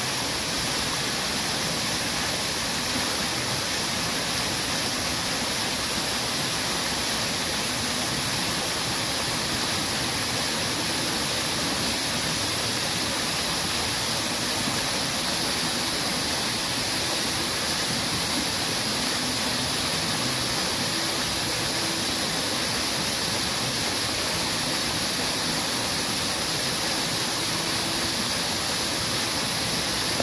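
Fountain jets spraying up and splashing down into a pool, a steady unbroken rush of falling water.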